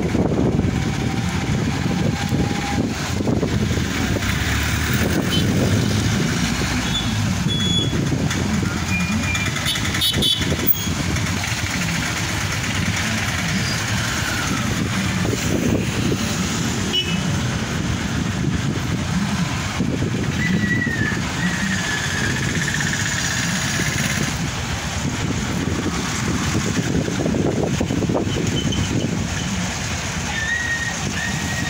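Road traffic on a wet street: bus, truck, car and motorbike engines and tyres passing in a steady low rumble, with a few short high tones now and then.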